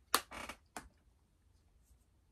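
Handling noise: a sharp click just after the start, a short rustle, then a second click before the middle.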